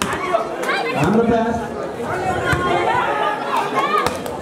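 Spectators and players chattering and shouting over each other at a volleyball game. A few sharp knocks of the ball being hit come through, one at the start and one just before the end.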